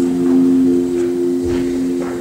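Yamaha marimba holding a steady chord of a few low-middle notes, the closing chord of the piece, which fades out shortly after.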